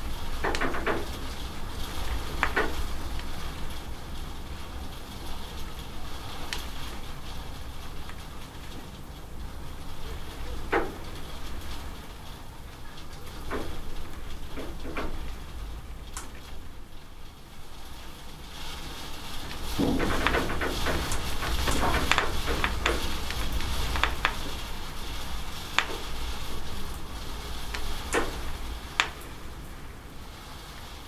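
Rain falling and dripping off a roof edge: a steady hiss with scattered sharp drip ticks, growing denser and louder for several seconds about two-thirds of the way through.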